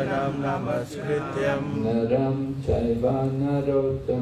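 A man's voice chanting prayers into a microphone in a sing-song recitation, with held notes and short breaks between phrases.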